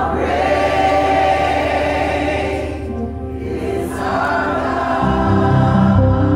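A choir singing a gospel worship song with a live band, in two phrases with a short break between them. Low electric bass notes come in strongly near the end.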